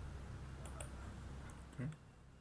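A few faint clicks from computer input while a word of code is being edited, over a steady low hum.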